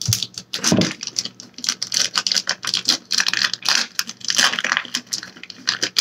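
Plastic shrink wrap on a collector's tin box being picked at and torn open by hand: a rapid, irregular crinkling crackle.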